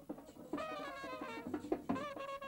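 Marching brass band playing: horns carry a melody over drums. A held note breaks off at the start, then a new phrase steps downward with drum beats, the loudest a sharp hit near the end.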